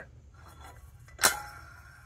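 A single sharp metallic clink about a second in, with a short fading ring, from the metal parts of a Trane direct return trap knocking together as it is handled.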